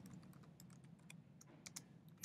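Faint keystrokes on a computer keyboard: a run of light, quick taps as a word is typed.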